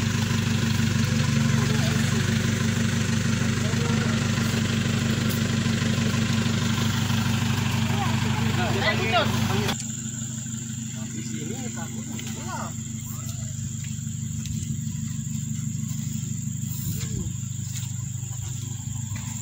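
A vehicle engine running loud and steady during a tow of a loaded lorry stuck in mud. About ten seconds in it gives way abruptly to a quieter engine running at rest, with a thin high insect buzz above it.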